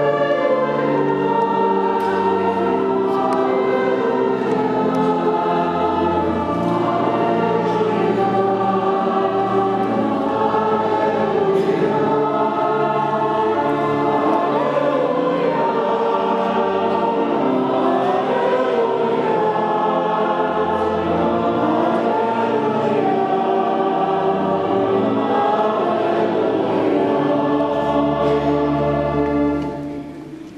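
Choir singing with organ accompaniment, the organ's low bass notes held and changing every second or two. The music stops just before the end.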